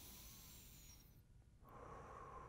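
A very faint, slow deep breath, heard as a soft hiss that fades out about a second in, leaving near silence.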